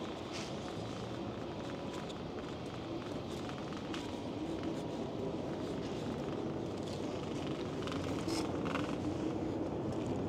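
Riding noise from an electric bike: a steady rush of wind and tyre noise with a faint wavering hum, growing slowly louder, with a few light clicks.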